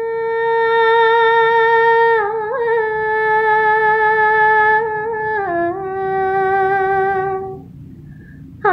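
A woman's solo voice sings long, wordless held notes, three in a row. Each one changes pitch slightly lower, about two and about five and a half seconds in, and the voice stops shortly before the end.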